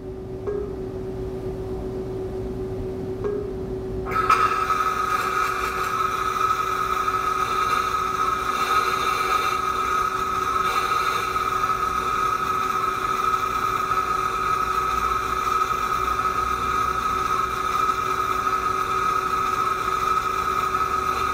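Lincoln Electric VRTEX 360 virtual welding simulator playing its synthetic flux-cored arc sound, a steady hiss and buzz that starts about four seconds in as the pass begins, over a steady low hum.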